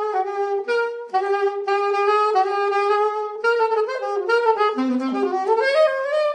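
Unaccompanied saxophone playing a jazz improvisation phrase, mostly long held notes at one pitch with a few quick note changes. It dips to lower notes about five seconds in, then climbs higher near the end.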